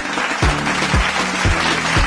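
Upbeat background music with a steady bass-drum beat, about two beats a second, over a held bass line and a dense, hissy upper layer.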